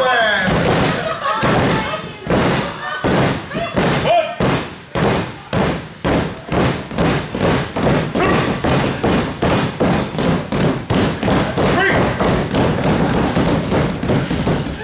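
Hands slapping a wrestling ring's mat in a steady rhythm, about three or four thumps a second, with a few shouts over it.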